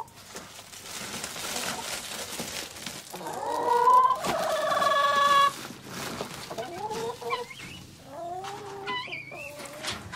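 Domestic hens clucking and calling, with one longer drawn-out call about halfway through and shorter clucks near the end. A soft rustling hiss in the first few seconds as diatomaceous earth powder is scooped from its plastic sack and sprinkled.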